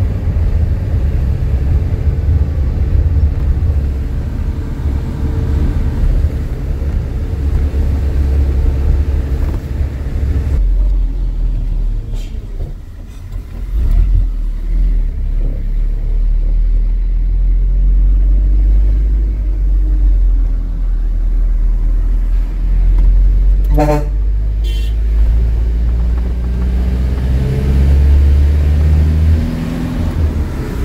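Truck engine running steadily under way, with a brief dip in loudness about twelve seconds in. A vehicle horn gives two short toots about twenty-four seconds in.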